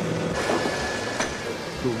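Steady mechanical noise with hiss and a thin, high whine that fades out about a second and a half in, with faint voices under it.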